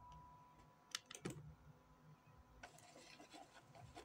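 Near silence: room tone with a few faint, short clicks about a second in.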